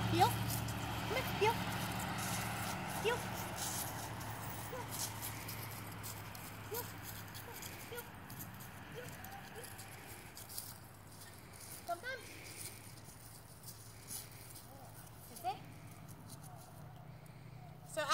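Footsteps of a person and a large dog walking through dry fallen leaves, heard as scattered light crackles and rustles. A low vehicle hum fades away over the first several seconds.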